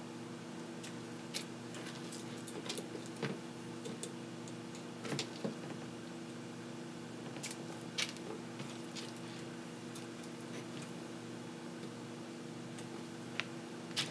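Side cutters snipping thin motor wires, heard as a handful of faint, sharp, scattered clicks over a steady low hum.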